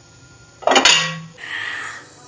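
Steel lid of an idli steamer lifted off the pot with a sharp metallic clatter and a short ring about half a second in, then a soft steady hiss near the end.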